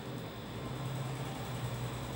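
Steady low hum with a faint even hiss: room tone.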